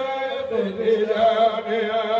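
Men's voices chanting an Islamic zikr (devotional remembrance of God), a sustained melodic line held and bending in pitch without pause.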